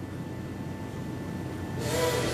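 Steady low hum of an airliner cabin in flight, with a brief breathy vocal sound near the end.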